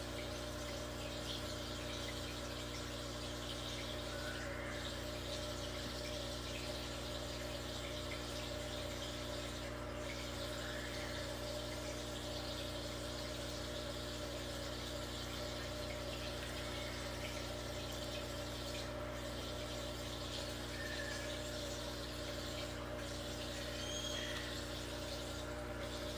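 A turtle tank's filter pump running: a steady hum with a faint wash of moving water. A few faint, short high chirps sound now and then.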